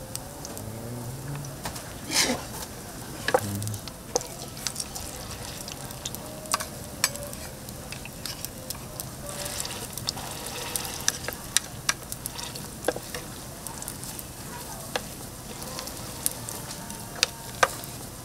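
Fish-cake patties frying in shallow oil on a flat griddle, sizzling steadily, with frequent sharp clicks and taps of a wooden spatula and a metal hand press against the pan.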